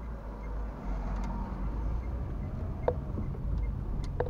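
Car driving, heard from inside the cabin: a steady low engine and road rumble that picks up a little about a second in, with a sharp click near the end.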